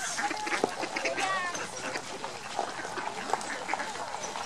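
Mallard ducks quacking, in short broken calls, the clearest about a second in.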